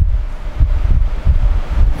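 Wind-like buffeting on the microphone: a loud low rumble that surges and fades unevenly, with no voice.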